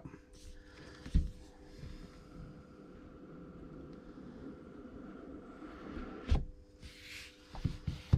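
Cardboard product box being handled and its tight-fitting lid lifted off: a soft knock about a second in, a sharper knock about six seconds in, then a brief swish as the lid comes away, with small taps near the end.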